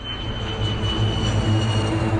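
Drone of a four-engine propeller bomber's engines in flight, a steady low hum growing louder. A thin high tone is held over it and fades near the end.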